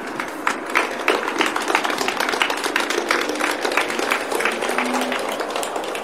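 Audience applauding, many separate claps over the whole stretch.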